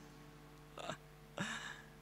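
A man's short chuckle into a handheld microphone: two quick breathy bursts, the second briefly voiced.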